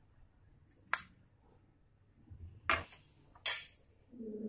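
Three short, sharp clinks of a steel spoon against a glass bowl while stuffing is spooned out and the bowl is set aside: one about a second in, two louder ones close together near the end.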